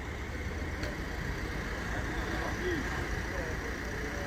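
Steady outdoor street background: a low, constant hum of a vehicle engine and traffic, with faint distant voices.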